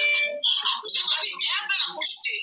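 Speech: a high-pitched voice talking rapidly without pause.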